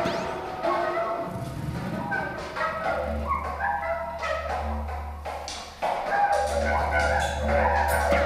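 Free-improvised experimental music of electronics, amplified objects and instruments. A low steady drone sets in about three seconds in, drops out briefly near six seconds, then returns, under scattered short pitched fragments and clicks.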